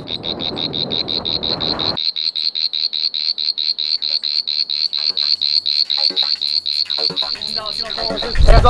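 An animal's high-pitched pulsed call repeating steadily at about seven pulses a second. A rushing noise lies under it for the first two seconds and then cuts off suddenly.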